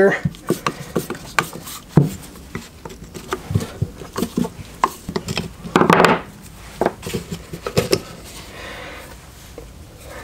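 A screwdriver backing small screws out of a metal throttle body, with irregular clicks and knocks of metal parts being handled on a wooden workbench as the idle air controller comes off. One louder sound comes about six seconds in.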